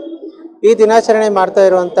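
Speech only: a man talking in Kannada, pausing briefly near the start with a held low tone before talking on.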